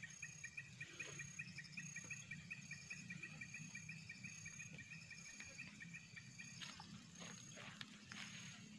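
Faint insects chirping in a fast, even, pulsed trill that stops about six and a half seconds in, with a few faint rustles near the end.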